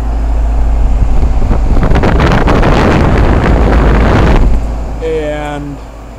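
Goodman heat pump outdoor unit running in cooling mode, its condenser fan blowing air up through the top grill and buffeting the microphone with a steady low rumble and gusty rushing. The rushing is loudest in the middle and eases off about four and a half seconds in.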